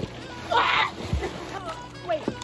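Pool water splashing briefly about half a second in as an inflatable paddleboard is shoved across the surface, followed by a low thump.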